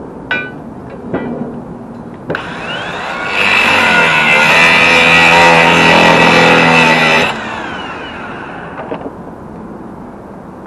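A cordless angle grinder spins up a little over two seconds in, then grinds steel for about four seconds with a loud, steady whine. It is switched off and winds down. A couple of sharp metallic clinks come before it.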